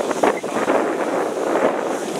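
Wind buffeting the microphone in gusts over a steady rush of noise.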